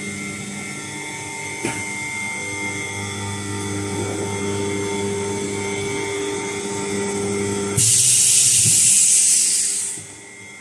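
DZ-600/2SB double-chamber vacuum packing machine running its cycle: the vacuum pump hums steadily while the chamber is evacuated, with a single click a couple of seconds in. About eight seconds in a loud hiss breaks out and fades over about two seconds, air rushing back into the chamber as the vacuum is released after the seal.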